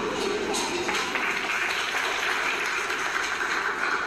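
Small audience applauding, the clapping setting in about a second in and carrying on steadily.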